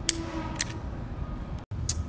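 Two faint metallic clicks from a commercial door lock's inner mechanism as a tool pushes down its small roller and slides it over with the cylinder pulled out.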